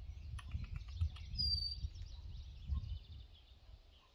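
Outdoor ambience with a steady low rumble, a few faint clicks, and a single short, bright whistled bird note about one and a half seconds in.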